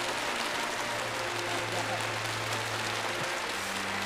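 Studio audience applauding steadily, with soft sustained background music tones underneath.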